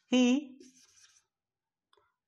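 A felt-tip marker writing on a whiteboard, a faint scratchy squeak of short strokes lasting about a second, right after a man speaks a single word.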